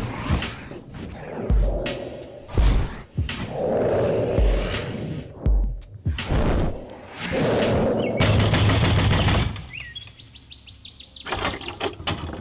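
Background film music with a low beat about once a second, then small birds chirping briefly near the end.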